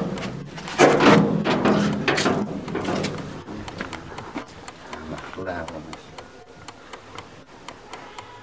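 People talking, not in English, with a loud scraping clatter about a second in as a heavy metal door is passed. This is followed by a run of light footstep clicks on packed dirt as they walk away down the alley.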